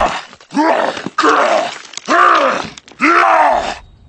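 A voice groaning with effort, four strained groans in a row, each rising and then falling in pitch.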